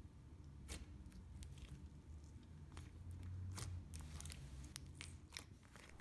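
Faint, scattered clicks and small pops of a clear glitter slime being pressed and poked with fingertips, over a low background hum.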